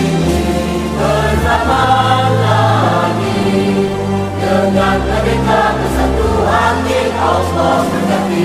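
An anthem sung by many voices over instrumental accompaniment, running on steadily.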